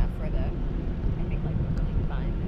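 Wind buffeting the microphone of a camera on a parasail, a steady low rumble. Faint snatches of the riders' voices come through it.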